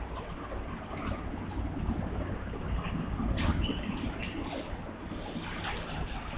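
Whiteboard marker writing, a few short scratchy strokes, over a steady low background noise in the room.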